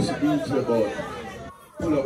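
Speech only: a man talking into a microphone, with a brief drop-out near the end.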